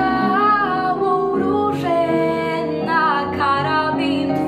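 A young girl singing solo, held notes with vibrato, over instrumental accompaniment.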